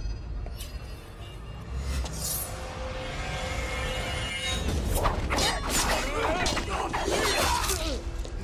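Film soundtrack: dramatic music under fight sound effects, with sudden crashes from about five seconds in.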